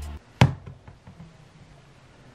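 A single sharp knock on a wooden tabletop about half a second in, as a foam squishy toy is set down.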